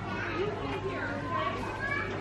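Indistinct background voices, including children's chatter, over a low steady hum.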